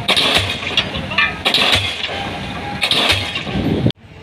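Diesel pile hammer driving a concrete spun pile: repeated heavy blows, each with its exhaust puff, about one every second and a half. The sound cuts off abruptly near the end.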